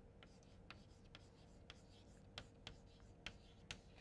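Chalk on a chalkboard, writing words: a faint, irregular string of short taps and scrapes.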